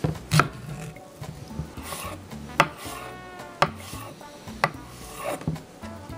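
Knife slicing a pear on a wooden cutting board: a few sharp knocks of the blade hitting the board, mostly about a second apart, with soft scraping between them.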